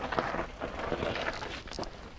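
Mountain bike rolling over loose stones on a dirt trail: knobby tyres crunching on gravel, with irregular clicks and knocks from the bike rattling.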